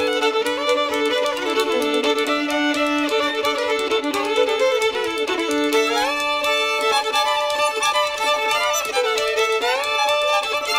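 Fiddle playing an instrumental break in a song, quick notes with sliding pitch, including a rising slide about six seconds in, over a steady rhythm accompaniment.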